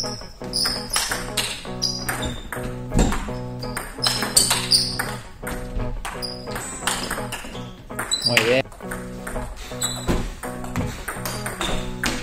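Background music over the sharp, irregular clicks of a table tennis ball being struck back and forth in rallies.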